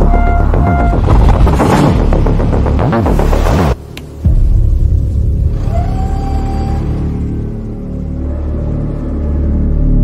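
Dramatic soundtrack music with a heavy low rumble that cuts out suddenly about four seconds in, then comes back as a steady low drone that swells again near the end.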